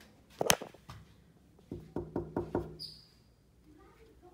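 Knocking on a hotel room door: one sharp click about half a second in, then five quick, even knocks, followed by a short high beep.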